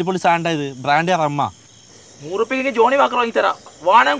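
Men's voices speaking Malayalam dialogue in two phrases with a pause between, over a steady high-pitched chirring of crickets.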